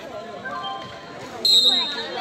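Spectators chatter faintly, then a referee's whistle sounds one short, steady blast about one and a half seconds in, signalling the penalty kick.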